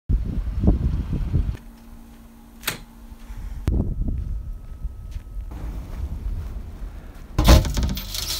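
Low wind rumble on the microphone outdoors, broken by abrupt cuts into quieter stretches. Near the end comes a loud metallic clatter as a metal rural mailbox door is pulled open.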